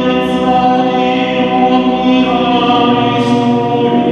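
Mixed choir of men and women singing long, held chords, moving to a new chord about two-thirds of the way through, with a couple of brief sung 's' sounds.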